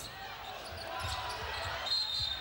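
Arena crowd noise during live basketball play, with a ball being dribbled on the hardwood court in repeated low thuds and a short high tone near the end.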